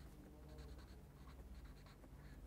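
Felt tip of a Sharpie marker scratching across paper in a run of faint, short, irregular strokes as capital letters are written.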